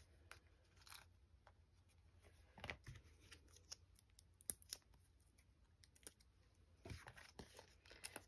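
Faint, scattered rustles and small clicks of paper crafting by hand: foam adhesive dimensionals being peeled from their backing and pressed onto the back of a small cardstock die-cut.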